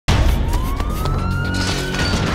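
Cinematic action soundtrack: a single tone rises slowly in pitch, siren-like, over low sustained music with a few sharp percussive hits.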